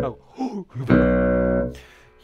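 Seven-string Ibanez RGMS7 multiscale electric guitar played through a Fender Twin Reverb on its clean tone. Low notes are struck about a second in and held, ringing big and firm, then fading.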